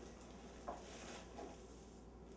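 Rolled oats poured from a glass measuring cup into a ceramic mixing bowl: a faint, soft patter of falling flakes, with a light tick about two-thirds of a second in.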